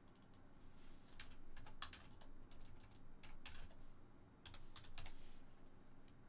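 Typing on a computer keyboard: irregular light key clicks, some in quick runs of several, with a pause around the fourth second.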